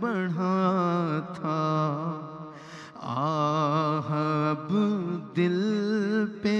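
A male naat reciter singing an Urdu devotional naat, drawing out long wavering melismatic notes with no clear words.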